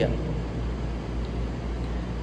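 Steady low background rumble with a faint hiss, unbroken and without any distinct event.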